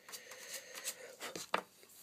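A cube of cue chalk rubbed briskly over a freshly fitted leather cue tip to load it with chalk: a run of short, scratchy strokes, about three a second.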